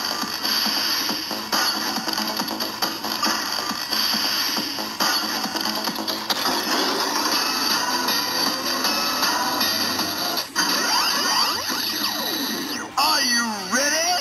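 DX Build Driver transformation-belt toy, loaded with the Rabbit and Tank Full Bottles, playing its electronic transformation audio from the belt's own speaker. A recorded announcer-style voice runs over a looping electronic standby tune, with sweeping sound effects near the end.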